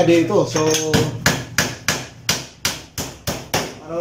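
Hammer nailing into a wooden frame: about nine quick blows, roughly three a second, starting about a second in.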